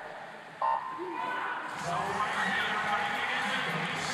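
Electronic starting beep of a swimming race, sounding once about half a second in and sending the swimmers off the blocks. It is followed from about two seconds in by a steady wash of noise.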